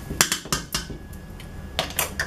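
Sharp metallic clicks of a measuring cup knocked against the rim of a metal cooking pot to empty out rice cereal: about three in the first second, then a couple more near the end.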